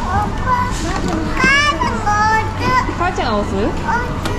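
A young child talking and calling out in a high voice, pitched highest about a second and a half in.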